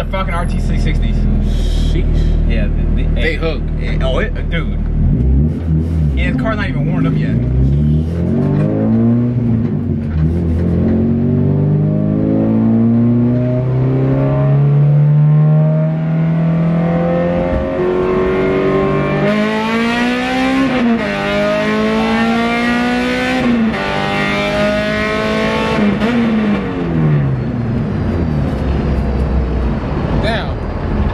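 Honda K20/K24 inline-four in a stripped Acura Integra, heard from inside the cabin, pulling hard. The engine note climbs steadily for about ten seconds, then rises and drops through three quick upshifts, and falls away near the end as the car slows.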